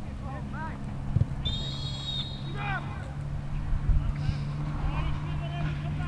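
Referee's whistle blown once, a single high blast of under a second about a second and a half in, with players' shouts around it.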